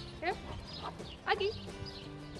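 A Belgian Malinois whining: a few short, high whines that sweep steeply up in pitch, the loudest about a second in, as the dog waits eagerly for a food treat.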